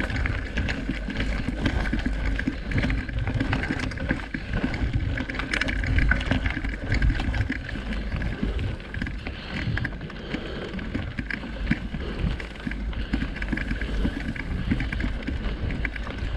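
Mountain bike riding over a dirt singletrack, heard from a camera mounted on the bike: wind noise on the microphone with tyre noise and irregular rattles and clicks from the bike over bumps.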